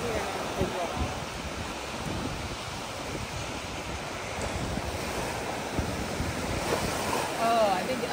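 Small ocean waves breaking and washing up a sandy shore, with wind buffeting the microphone.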